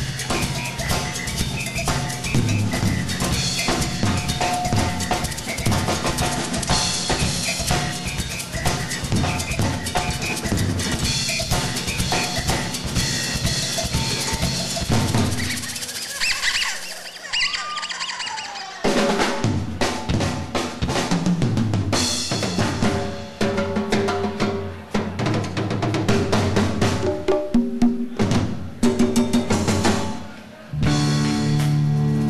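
Live percussion break: a drum kit and other percussion played together in a dense, driving pattern with snare, bass drum and rolls. The playing thins out for a few seconds past halfway, then comes back in full.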